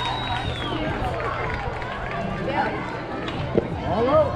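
Voices of spectators and players calling out across a youth baseball field, over a steady low outdoor hum. A single sharp smack sounds about three and a half seconds in.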